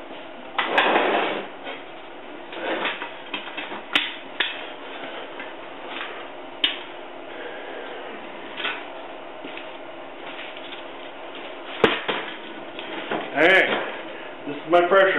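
Scattered knocks, clicks and rustling of things being handled, with a man's voice starting to talk near the end.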